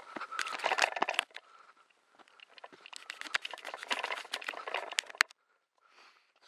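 Footsteps crunching through dry leaf litter and twigs on a forest floor, in two stretches of walking with a short pause between, stopping about a second before the end.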